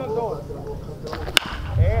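A baseball bat striking a pitched ball once, a single sharp crack a little over a second in.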